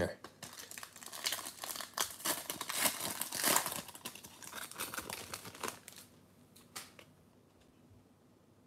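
Crinkling and tearing of a trading card pack's wrapper as it is opened by hand: dense crackling for about five seconds, then a few light clicks as it settles.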